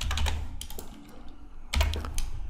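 Computer keyboard typing: a quick run of keystrokes in the first half second, a quieter pause, then a few more clicks near the end.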